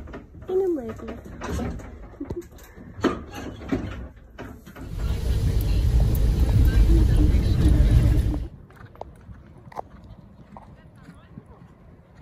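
A woman laughs, then steady road and engine rumble inside a moving car for about three and a half seconds, cutting off suddenly; faint clicks follow.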